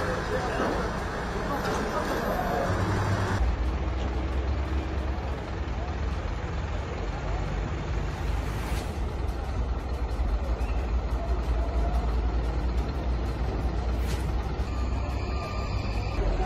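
Roadside ambience: a steady low rumble of vehicle engines and traffic, with people's voices in the background. The sound changes abruptly about three seconds in, at a cut between clips.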